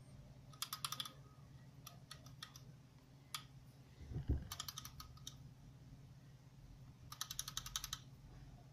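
Three quick bursts of rapid small clicks, about ten a second, from a handheld cylindrical e-cigarette battery device being worked in the hands, with a single dull handling thump near the middle.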